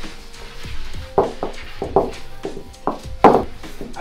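Wooden rolling pin knocking and rolling on a granite counter as katmer dough is rolled thin: a run of about seven irregular knocks starting about a second in, the loudest a little after three seconds.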